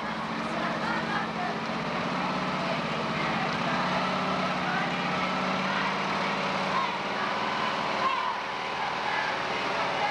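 Engine of a large parade truck running steadily as it rolls slowly past, its hum strongest in the middle and easing off near the end. People talk in the crowd around it.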